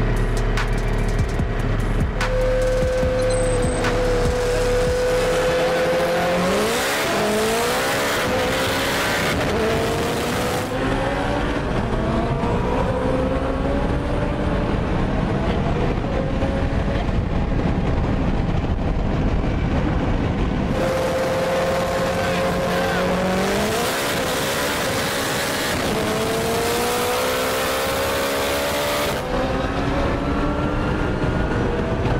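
Turbocharged Honda Civic's K20 four-cylinder engine at full throttle in a highway roll race, heard from inside the car: it holds steady revs, then climbs in pitch through several gear changes. This happens twice, about 6 seconds in and again about 23 seconds in.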